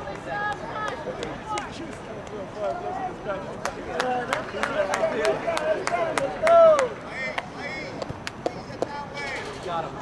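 Spectators' voices at a youth soccer game: overlapping talk and calls, with one loud shout falling in pitch about two-thirds of the way through, and a quick run of sharp clicks in the middle.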